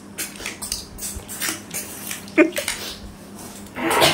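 Snail shells clinking and tapping against ceramic plates and a steel bowl as several people pick through and eat cooked snails: a steady run of irregular small clicks.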